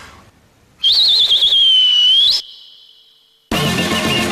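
A loud finger whistle through the mouth: one high whistle about a second and a half long that warbles at first, then holds steady and rises at the end. Music with a steady beat starts shortly before the end.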